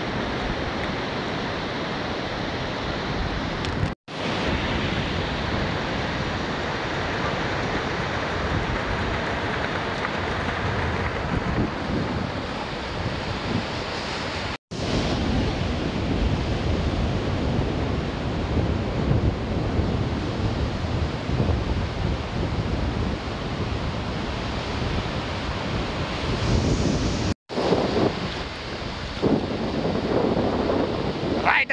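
Wind rumbling on the microphone over the steady wash of ocean surf, broken three times by brief cuts to silence.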